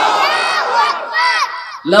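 Crowd of listeners calling out together in response to a Quran recitation, many overlapping voices that fade away just before the end.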